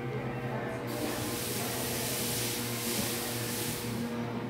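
A steady spraying hiss that starts suddenly about a second in and cuts off near the end, over a low steady hum.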